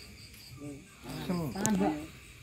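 Men's voices talking, loudest in the second half, over faint, steady chirping of crickets.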